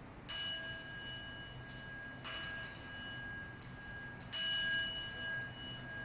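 Small altar bells struck repeatedly in short groups, each strike ringing on with clear high tones. This is the ringing that marks the elevation of the consecrated host at Mass.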